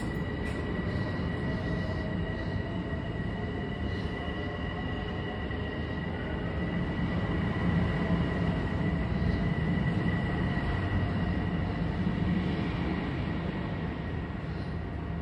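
Long Island Rail Road electric commuter train running in the station below: a steady rumble with a high, steady whine over it, growing a little louder in the second half.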